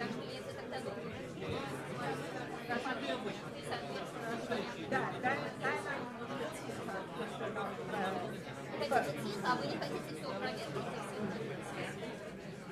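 Indistinct chatter of many people talking at once in a large hall, with no single voice standing out.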